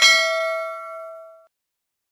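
Notification-bell 'ding' sound effect for a subscribe animation's bell icon: a single bell strike that rings and fades out within about a second and a half.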